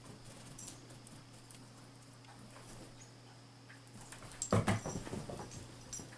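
Salukis playing, quiet scuffling and small knocks, then a burst of thumps and knocks about four and a half seconds in.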